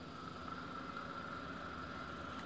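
Faint, steady whistle of air drawn through a Merlin rebuildable tank atomizer during a long drag on a vape.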